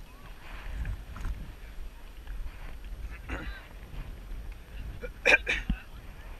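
A person laughs in two short bursts near the end, over a steady low wind rumble on the microphone.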